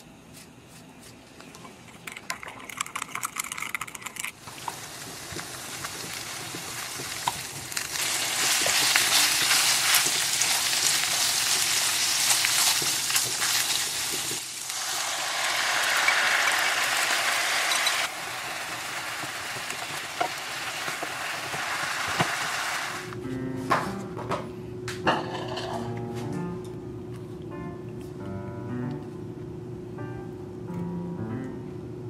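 Beef-and-tofu tsukune patties sizzling in a frying pan, with a loud, steady frying hiss for roughly twenty seconds. About three quarters of the way through the sizzle stops and soft piano music takes over.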